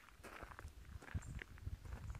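Faint footsteps: soft, irregular thumps with light rustling.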